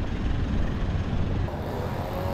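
Street traffic close by: a car engine running with tyre noise, changing about a second and a half in to a motor scooter's engine hum.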